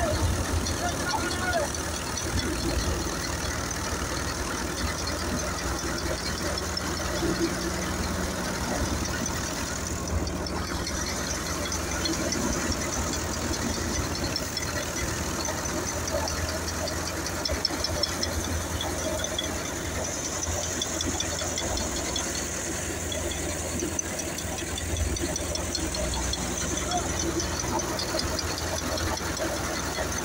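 Massey Ferguson 7250 tractor's diesel engine running steadily under load, driving a threshing machine whose drum and fan run continuously as crop bundles are fed in.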